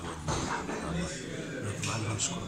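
Speech: a man's voice in short phrases over a low background hum.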